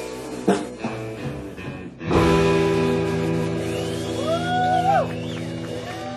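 Live indie rock band, electric guitars and drum kit. A final chord is struck about two seconds in and left ringing, with sliding high tones over it near the end.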